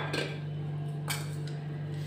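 Light clinks of tableware against a plate during a meal: a short knock just after the start and another about a second in, over a steady low hum.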